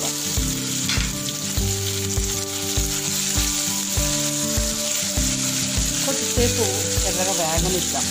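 Taro pieces sizzling in hot oil in a kadai, stirred with a silicone spatula. A steady frying hiss runs under background music with held notes and a regular beat.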